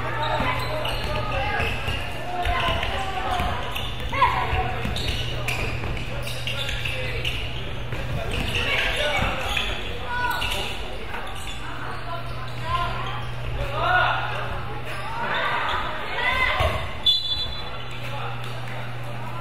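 Basketball bouncing on a hardwood gym floor during play, with players' and spectators' voices calling out in a large, echoing hall. A short, high referee's whistle sounds about a second before the end.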